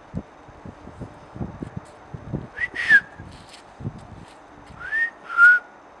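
A person whistling to the puppy: a short whistled note about two and a half seconds in that rises and then falls, and two more near the end, one rising and one held level. Soft, low footstep thuds on paving run underneath during the first few seconds.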